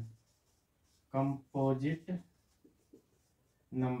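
Marker pen writing on a whiteboard, faint strokes heard in the pauses between a man's brief spoken words.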